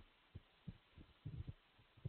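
Near silence: room tone with a few faint, short low knocks spaced irregularly through it.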